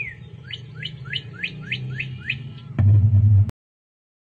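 A small bird chirping: about seven quick rising chirps, roughly three a second. A loud low hum follows near the end, then the sound cuts off abruptly.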